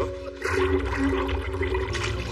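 Toilet flushing, a rush of water starting about half a second in, with water splashing from the bowl, over steady background music.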